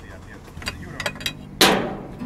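Acoustic guitar: a few light clicks and soft plucked notes, then a loud strummed chord about one and a half seconds in that rings on.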